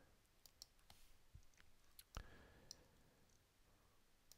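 Faint, scattered clicks of a computer mouse and keyboard keys over near silence.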